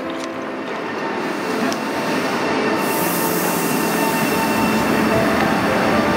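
Passenger train noise growing louder, with a high hiss coming in about three seconds in, under background music.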